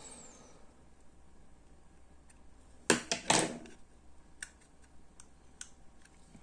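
Clicks and taps from handling a small plastic door/window sensor: two sharp, louder clicks about three seconds in, then a few faint ticks.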